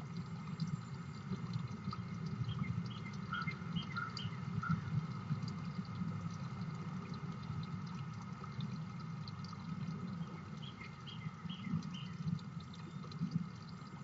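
Small birds chirping in two short runs of quick notes, one a few seconds in and another about ten seconds in, over a steady low rumble.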